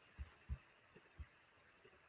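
Near silence: room tone with three faint, short low thumps in the first second or so.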